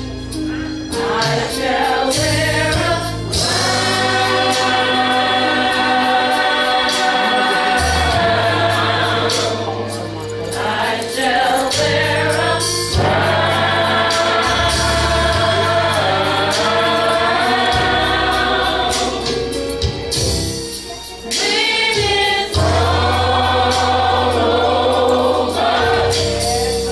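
Gospel choir singing with band accompaniment: long held chords over steady bass notes, with drum kit and cymbal strikes throughout.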